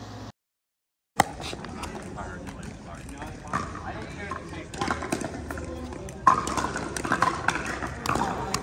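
A brief total dropout, then the live sound of a pickleball game: indistinct players' voices with a few sharp pops of paddles hitting the ball, the voices louder near the end.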